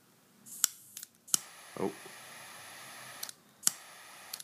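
Jet torch lighter being lit: sharp clicks of the piezo igniter, each followed by the hiss of the jet flame, a brief one first and then a steady hiss of about two seconds that cuts off, and one more click near the end.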